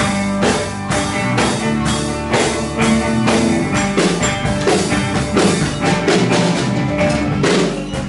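Live rock band playing: electric guitar, bass guitar and drum kit, with a steady drum beat of about two hits a second.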